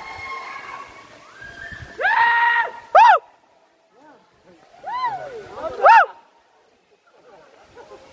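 Four loud, high-pitched vocal calls: one held for about half a second, then short calls that rise and fall in pitch, about a second in from each other in two pairs.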